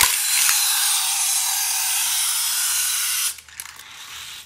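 Hot Wheels Track Builder Lift & Launch toy set in action: a click, then a loud, steady, hissing whir for a little over three seconds that stops suddenly.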